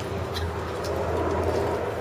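Steady low rumble of a running vehicle engine, with a faint hum above it and no speech.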